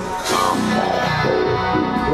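Electric guitar played live through effects and distortion, a held, sliding guitar intro leading into a heavy rock song.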